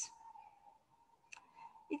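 A quiet pause holding a faint steady tone and one short, sharp click about a second and a third in.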